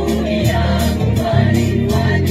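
Gospel music with a choir singing over a steady beat and bass line.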